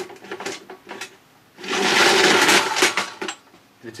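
Bayco retractable AC extension-cord reel recoiling. A few light clicks, then the spring-driven reel pulls the cord back in with a loud whirring rattle lasting just under two seconds, which stops as the cord is fully wound.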